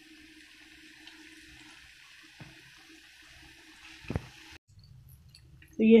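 Battered chicken pakoras deep-frying in hot ghee in a pan: a faint, steady sizzling hiss that cuts off abruptly about four and a half seconds in, with a single knock just before.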